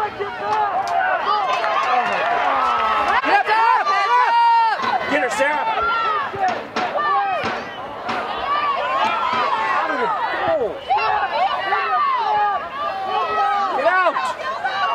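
Spectators shouting and calling out during a soccer game, many voices overlapping at once, with one louder held shout about four seconds in.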